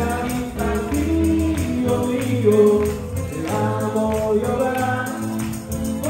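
A congregation singing a worship song together to instrumental accompaniment with a steady bass, with rhythmic hand clapping.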